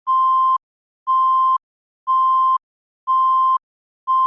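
Countdown beeps: a single electronic tone sounding four times, once a second. Each beep lasts about half a second, at the same pitch, with silence between.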